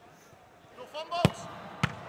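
A football kicked hard in a goalkeeper shooting drill: one sharp thud about a second and a quarter in, then a second sharp thud just over half a second later as the ball is met again. A short shouted call from a player comes just before the first kick.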